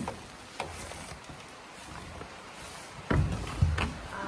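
Camera handling noise: scattered clicks and knocks over a low rumble, with two heavier thumps near the end.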